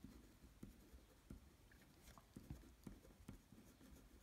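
Faint scratching of a felt-tip pen writing on a paper worksheet, in short, irregular strokes.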